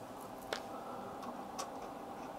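Faint handling noise of an antenna being screwed onto a coax connector, with a sharp metal click about half a second in and a lighter one later.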